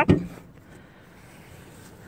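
A man says one word, then only faint steady background noise, with no distinct click or thump.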